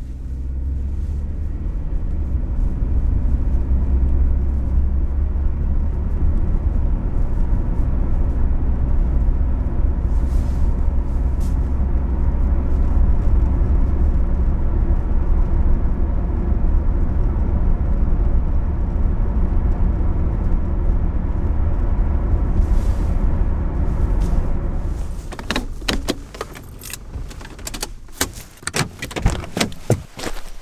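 Car driving on the highway, heard from inside the cabin: a steady low rumble of engine and road noise. About 25 seconds in it gives way to footsteps crunching on gravel.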